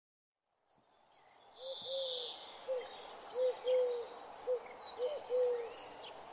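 A dove cooing in a repeated phrase of short and drawn-out low notes, with small birds chirping and twittering high above it. It fades in about a second in.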